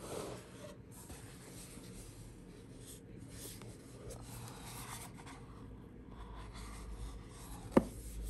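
Soft scraping and rubbing of cloth gloves handling a cardboard gift box and a hard sunglasses case with a grained leather-like cover, with one sharp click near the end.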